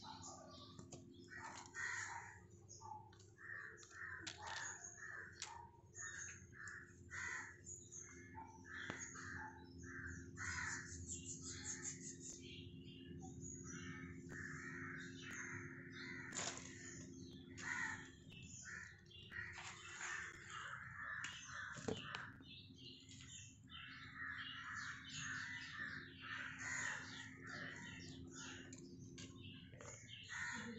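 Birds calling over and over in short, closely repeated notes, with a steady low hum underneath.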